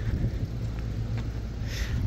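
A steady low rumble with a faint hiss above it, even throughout, with no distinct events.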